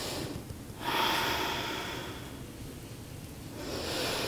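A woman breathing audibly and deeply while holding a wide squat. A long, loud breath comes about a second in, and another starts near the end.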